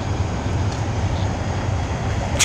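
Wind buffeting an outdoor microphone: a steady, fluctuating low rumble.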